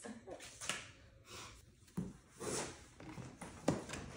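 Cardboard box and packing being handled: short bursts of rustling and scraping, with a few sharp knocks.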